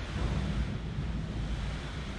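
Wind blowing: a steady, deep rushing noise with no distinct events.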